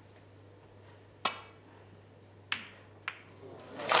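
A snooker shot in a quiet arena: a sharp click of the cue striking the cue ball, then a second click of ball on ball about a second later and another shortly after. Applause begins to swell in at the very end as the pot goes in.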